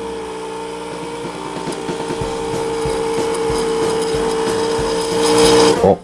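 Nescafé Gold Blend Barista PM9631 coffee machine running while it dispenses coffee, a steady mechanical hum with a held tone that grows louder and stops near the end.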